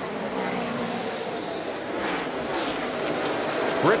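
NASCAR Cup stock car's V8 engine running at speed around the oval, a steady drone on the broadcast track audio.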